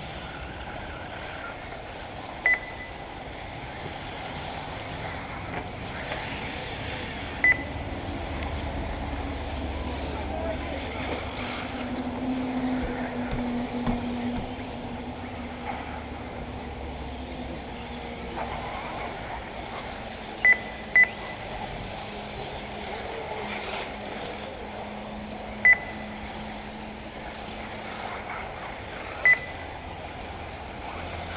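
Six short electronic beeps from the race's lap-timing system, each marking a car crossing the timing line, spread unevenly with two in quick succession. Between them are steady outdoor background noise and faint voices.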